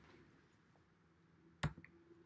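Near silence, broken about one and a half seconds in by a single short, sharp click.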